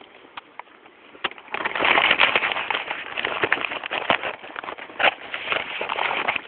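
Cow chewing a donut close to the microphone: dense crackling and crunching that starts loud about one and a half seconds in, after a few faint clicks.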